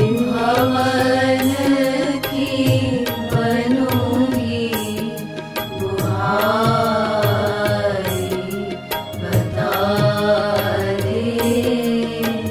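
A Hindi devotional song sung in a chanting style, over a steady held drone and a regular percussion beat.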